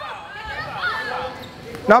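Quieter voices of people talking in a gymnasium, fainter than the close shouting, with the room's echo.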